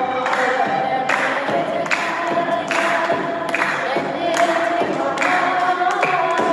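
A woman sings an Ethiopian Orthodox mezmur, a hymn to the Virgin Mary, into a microphone, holding long gliding notes. Behind the voice a regular beat falls about every 0.8 seconds.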